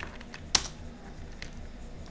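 A few computer keyboard key clicks, one sharper and louder about half a second in, the others faint.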